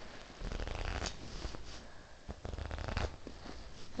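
Playing cards bent and released off the thumb in a slow riffle, a rapid run of soft card-edge clicks, coming in a few short runs.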